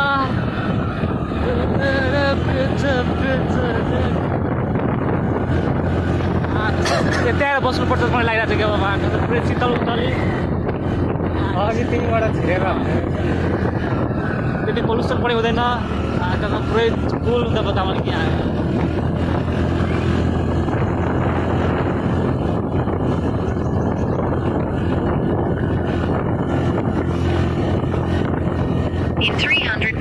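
Motorcycle engine running steadily on the move, with wind buffeting the microphone.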